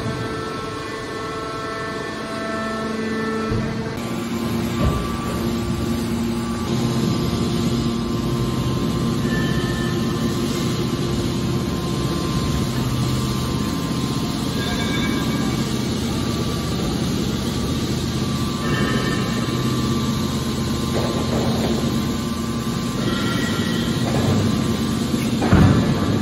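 Hydraulic scrap metal baler running: a steady hum from its hydraulic power pack while the cylinders swing the heavy lid down to close the press box. Music plays for the first few seconds.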